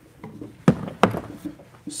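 Hard plastic equipment case set down on a wooden workbench and opened: two sharp knocks about a third of a second apart, then faint clatter.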